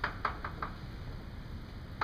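Chalk striking a blackboard while writing: about four quick taps in the first second, then a pause.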